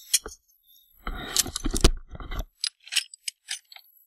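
A galvanized metal chicken feeder being handled and carried: a scuffling clatter with a couple of sharp knocks about a second in, then a quick run of light metallic clinks.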